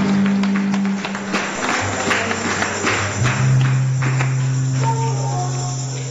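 Church band music: long held low bass-keyboard notes under rapid, jingling percussion hits. It begins to fade near the end.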